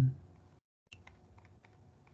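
A dull thump at the start, then several light clicks at a computer's keyboard and mouse over a faint steady hum, while pages of a document are scrolled.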